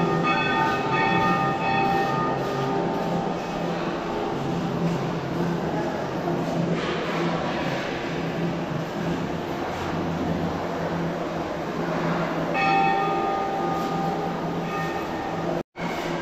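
Temple bells ringing repeatedly over a steady background din of the busy temple, for the first few seconds and again from about twelve seconds in.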